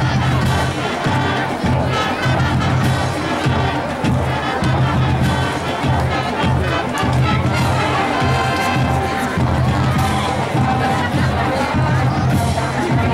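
High school marching band playing, with trumpets and other brass over drums and a low brass line that pulses in a regular rhythm. Crowd noise from the stands mixes in.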